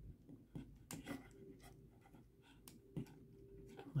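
Faint, scattered clicks of hard plastic parts of a Transformers Studio Series Bonecrusher figure being handled as a leg peg is tabbed into the foot, with the clearest clicks about three seconds in and just before the end.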